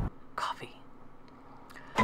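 A single short breath- or whisper-like puff of voice about half a second in, followed by faint room tone.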